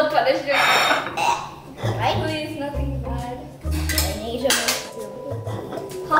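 Glass jar with a metal screw lid clinking and rattling as it is handled on a table.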